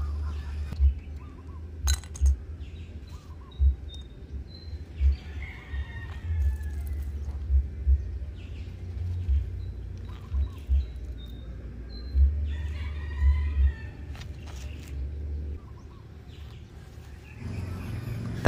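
Small stones dropped by hand into a ceramic bonsai pot, a scattered series of light clicks, with soft low thumps and birds chirping faintly in the background.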